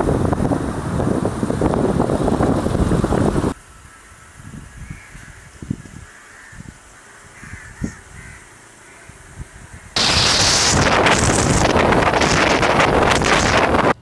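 Loud wind rushing over a microphone cuts off abruptly about three and a half seconds in. A quiet stretch follows with crows cawing faintly and a few scattered knocks. Loud wind noise returns just as abruptly about ten seconds in.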